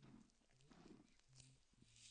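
Near silence: faint room tone inside a vehicle, with a faint low hum.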